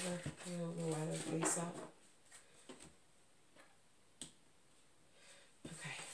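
A voice held on one steady pitch for about a second and a half, then light clicks and one sharp tap about four seconds in as tarot card decks are handled and set down on a wooden desk.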